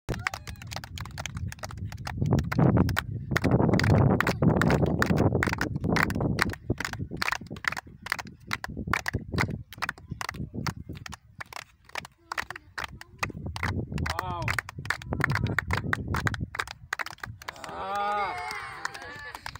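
Soccer ball being juggled: a quick, uneven run of dull taps as the ball comes off the foot, thigh and head, several touches a second.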